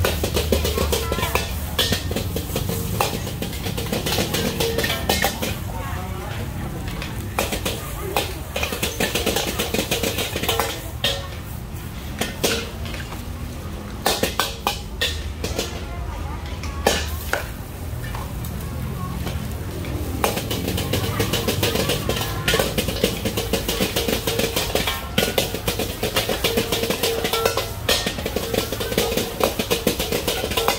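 A metal spatula clangs and scrapes against a wok as fried rice is stir-fried over a gas burner, with many sharp strikes throughout. Under the strikes runs the burner's steady low rumble.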